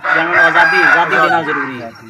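A rooster crowing once, a long crow lasting most of two seconds, over a man's voice.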